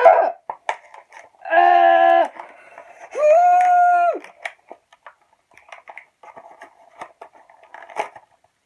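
A boy's voice holding two long wordless notes, each about a second long: the first lower, the second higher and sliding up into it. Faint clicks and crinkles of a small cardboard chocolate box being handled and opened run underneath.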